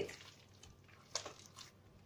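Hands kneading soft, buttery croissant dough on a marble counter: faint sticky sounds of dough being pressed and gathered as the butter is worked in, with one short, sharper sound a little over a second in.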